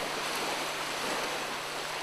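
Steady hissing outdoor background noise, even throughout, with no distinct events.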